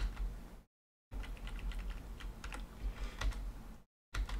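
Computer keyboard keys pressed in a quick, irregular series of clicks, starting about a second in, over a low steady hum.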